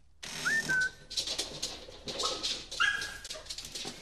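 A dog whining in three short, high-pitched whimpers, over clicks and rustling as the flat's door is opened.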